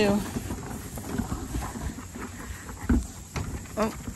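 Scattered knocks and clatter from a wooden barn door swinging open and the hooves of pygmy goats trotting out over the threshold and dirt.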